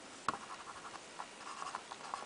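Marker pen writing on a whiteboard: a sharp tick as the tip touches down about a quarter second in, then faint short scratching strokes as letters are written.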